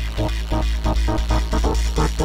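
Electronic dance music: a quick run of short synthesizer notes over a steady deep bass.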